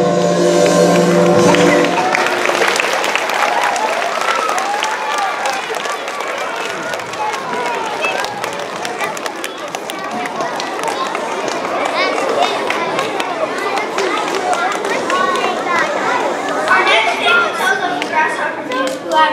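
The last held chord of a song's backing music rings on for about two seconds, then gives way to a hubbub of many voices chattering at once.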